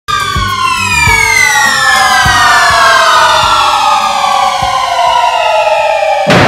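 A siren-like pitched tone winding slowly downward in pitch for several seconds, used as an intro effect at the start of a hip-hop track, with a few low thuds underneath.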